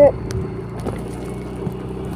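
Small motorbike engine running steadily while the bike rides along a street.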